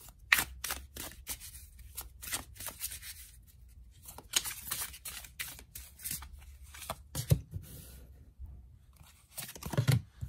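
A deck of tarot cards being shuffled by hand: a run of quick, papery flicks and riffles at uneven intervals. A couple of louder, duller thumps, about seven seconds in and again near the end, as the cards knock against each other or are set down on the table.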